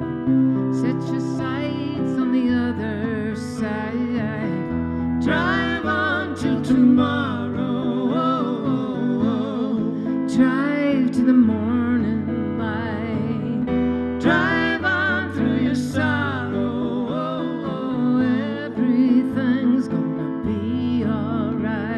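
Live folk song: a woman singing, with vibrato on held notes, over a strummed acoustic guitar and a second guitar.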